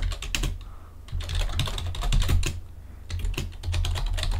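Computer keyboard typing, keystrokes in three short runs with brief pauses between them.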